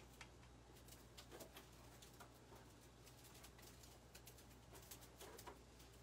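Near silence: a faint steady room hum with scattered soft clicks and rustles from hands fitting a ribbon bow onto a grapevine wreath.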